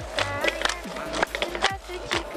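A plastic water bottle shaken as a busker's rattle together with hand claps, making quick, uneven clicks and rattles, with a few short vocal sounds between them.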